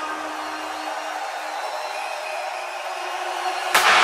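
Breakdown in an electronic house track: the kick and bass drop out, leaving a soft sustained pad and a fading held note. A sudden loud swell near the end leads back into the beat.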